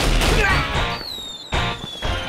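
Soundtrack music laid over edited sound effects: a loud crash-like hit at the start, then a single high whistle that falls slowly in pitch through the second half.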